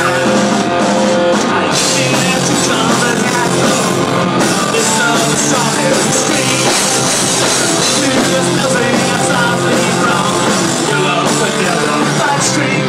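A live rock band playing loud, with electric guitar and a singer's vocals over it, going steadily without a break.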